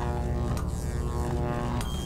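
Quiet orchestral film score played on virtual instruments: sustained chords over low held notes. A short high beep comes near the end.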